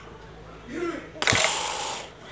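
A child's voice makes a short wavering sound, then a sharp knock followed by about half a second of loud hiss: a mouth-made blast sound effect.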